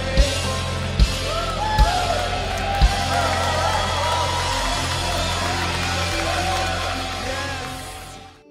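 Live rock-style worship band playing: drum kit with kick-drum beats about every 0.8 s over bass and electric guitars. The beats stop about three seconds in while the band holds a sustained chord under a wavering lead melody, and the music fades out near the end.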